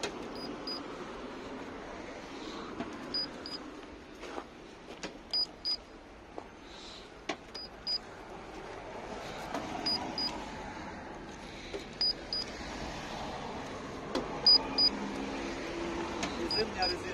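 Handheld paint thickness gauge giving a short high double beep with each reading as its probe is pressed to the car's body panels: seven double beeps about two seconds apart.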